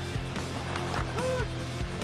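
Arena crowd noise during live hockey play, with music running underneath and a short voice-like sound a little past a second in.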